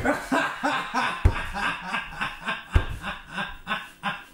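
A person laughing in a quick run of short bursts, with a couple of low thumps on the microphone in between.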